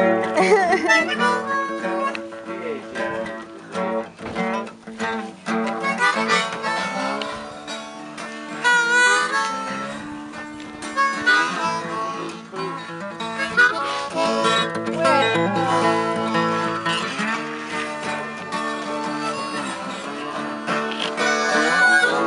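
Acoustic guitar played together with a harmonica, the harmonica holding long chords with a few bent notes.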